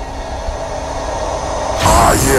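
A droning, rumbling swell in an EDM mix, with a few held tones over low noise, slowly growing louder. A vocal sample and the beat cut in right at the end.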